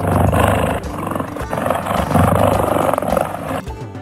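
Big-cat growl sound effect played as the cheetah's call, loud and rough, in two long swells with a brief dip about one and a half seconds in, stopping shortly before the end.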